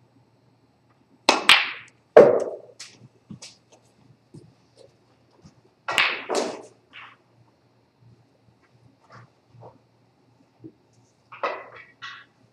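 Snooker balls knocking on a snooker table: the cue strikes the cue ball, then sharp clicks as balls hit each other and the cushions. Two loud knocks come about a second apart early in the shot, two more close together around the middle, and one near the end, with fainter ticks between.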